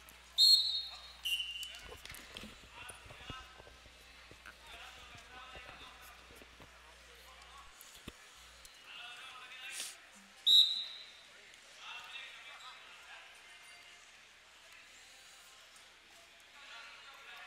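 Short referee's whistle blasts, one just after the start, which restarts the wrestling after a step out of bounds, and another about ten seconds in, over distant shouting from coaches and spectators.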